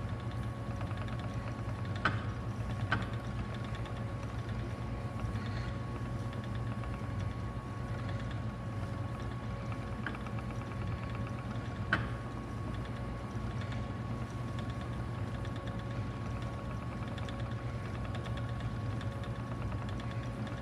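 Ashford Elizabeth II spinning wheel running steadily under treadling, with a few light clicks; the wheel is out of balance and in need of oiling.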